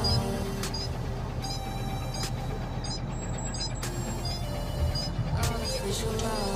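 Hino 500 truck's diesel engine running steadily under way, heard from inside the cab as a low hum, with music playing over it.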